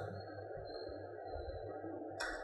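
Low steady background hum and hiss with a faint, thin high-pitched whine that fades out near the end.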